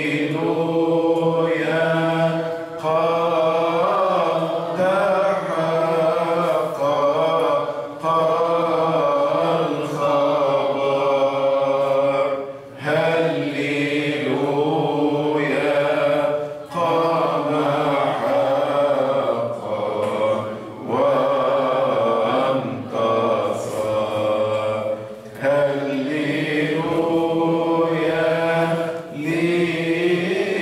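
A man's voice chanting a hymn into a microphone, in long held, ornamented phrases, with a short breath every few seconds.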